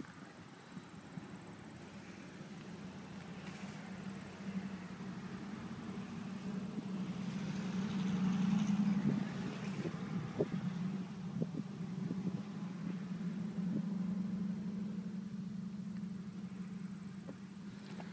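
Duramax 6.6-litre V8 diesel idling steadily, a low hum that swells about eight seconds in, with a few light clicks around ten seconds in.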